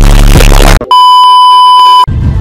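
Loud music with heavy bass cuts off abruptly a little under a second in. A loud, steady, high beep tone follows and holds for about a second.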